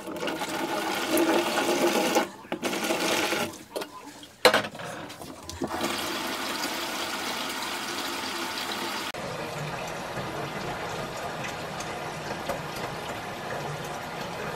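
Water poured from a glass jug into a plastic basin in a stainless steel sink, in a few short pours with brief breaks. After that, the kitchen faucet runs a steady stream into the basin.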